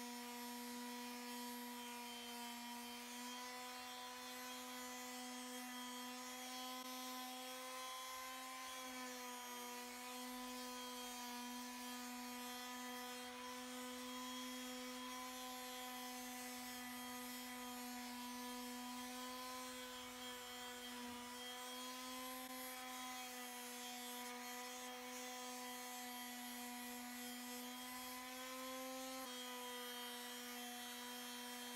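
Electric palm sander with 80-grit sandpaper running on painted wood, a steady motor hum whose pitch wavers slightly as the sander is worked along the frame.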